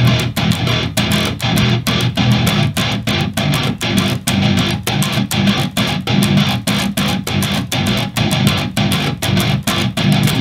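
Distorted electric guitar chugging on a single low note with muted dead-note strokes in between, the root moving from E up to G partway through, accented in groupings of seven and six eighth notes at 200 beats per minute over a 4/4 metronome click.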